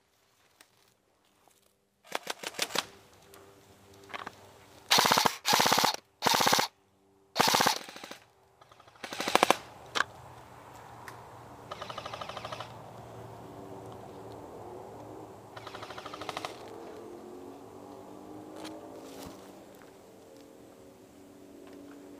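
Airsoft guns firing on full auto. There are six short, loud bursts of rapid clicking shots from about two to ten seconds in, then two fainter bursts over a low background.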